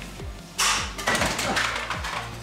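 A handheld stud finder dropped, giving a short clatter about half a second in, with more scraping noise after it. Background music with a steady beat plays throughout.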